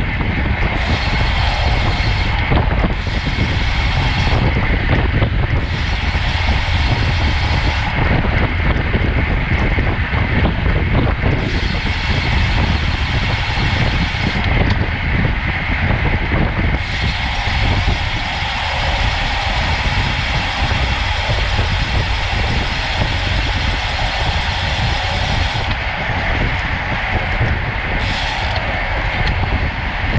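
Steady wind buffeting and road noise on a bicycle-mounted camera's microphone while riding in a road-race group at over 30 mph.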